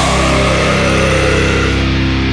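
A death metal band's distorted guitar and bass chord held and ringing out after the drums stop, with a high tone sliding down over it in the first second.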